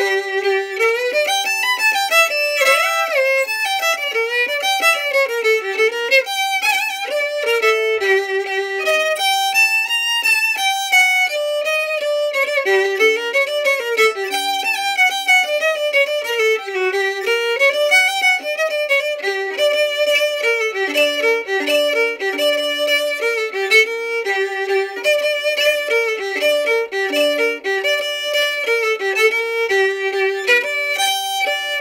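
Solo violin playing a klezmer tune: a continuous bowed melody of quickly changing notes.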